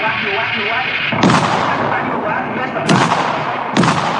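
Battle gunfire: three loud shots or blasts with short tails, about a second in, near three seconds and just before the end, over a steady background din of combat.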